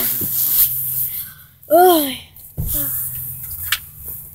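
Rustling and rubbing as a phone microphone brushes against hair and a fur-trimmed hood, over a faint steady low hum. About two seconds in comes a short drawn-out vocal exclamation, and near the end a sharp click.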